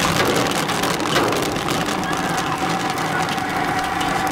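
Popcorn popping in a large steel kettle while it is stirred with a long paddle: a dense, steady crackle.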